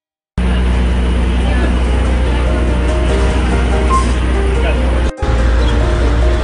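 City street noise: a steady low traffic rumble with people's voices mixed in. It starts abruptly just after the start and drops out for a moment about five seconds in.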